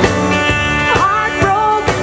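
Live rock band playing: a woman sings lead with a wavering, held voice over strummed acoustic and electric guitars and a drum kit keeping a steady beat.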